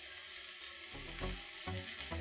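Chopped red onions frying in vegetable oil in a pot on medium-low heat, a steady, fairly quiet sizzle, while a garlic clove is rubbed over a small hand grater above the pot.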